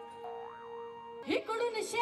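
Live folk protest music: a held steady note sounds under a faint wavering voice. A little past halfway there is a quick upward swoop, and then a voice starts singing with a wavering tone.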